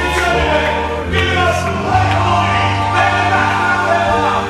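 Hip-hop beat playing its intro, with choir-like sung vocals over long, sustained bass notes; the bass shifts to a new note about two seconds in.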